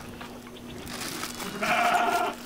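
A goat bleats once, a short wavering bleat starting about a second and a half in.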